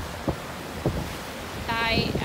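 Small sea waves washing over a cobble beach: a steady rush of surf, with some wind on the microphone. Two short low knocks come in the first second, and a voice starts near the end.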